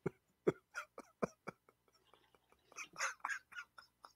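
Soft, breathy laughter: a run of quiet chuckles in the first second and a half, a short pause, then another burst of chuckling near the end.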